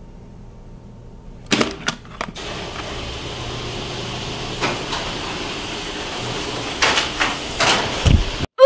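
A door knob's latch clicking and a door being opened, a quick cluster of clicks about a second and a half in, then a steady hiss of background noise with a few light knocks.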